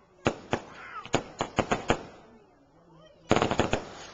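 Fireworks going off: a string of sharp, irregular bangs in the first two seconds, then a rapid volley of cracks a little over three seconds in.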